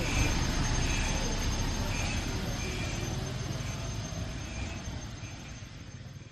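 Honda Mobilio pulling away and driving off: a steady engine and tyre noise that grows gradually fainter as the car recedes.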